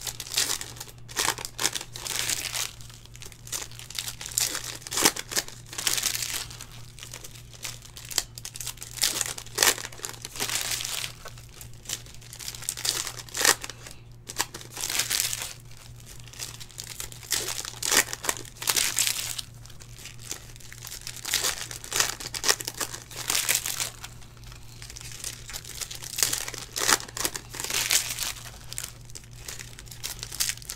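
Foil wrappers of 2019 Donruss Optic football hobby packs crinkling and tearing as packs are ripped open by hand, in irregular bursts, over a steady low hum.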